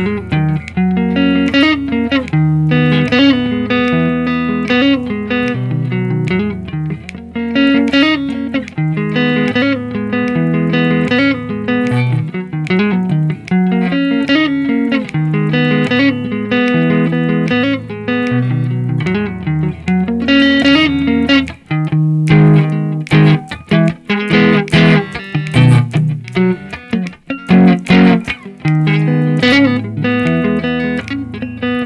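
Squier Stratocaster electric guitar played through an amp: a picked riff of single notes over low bass-string notes, repeating in a cycle of about six to seven seconds. In the last third the playing turns choppier, with short, sharp picked notes and brief gaps between them.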